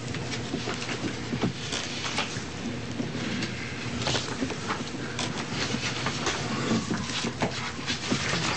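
Room noise in a meeting chamber: scattered light clicks, knocks and rustles over a steady low hum.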